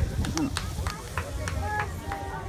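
Lady Knox Geyser erupting: a steady low roar from the column of steam and water, with onlookers' voices chatting over it and scattered sharp clicks.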